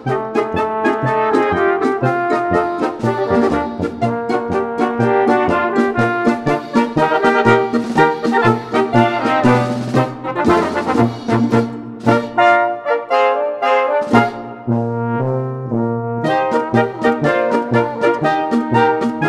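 A polka played with brass instruments to a steady beat. The low bass drops out for a few seconds about twelve seconds in, then comes back.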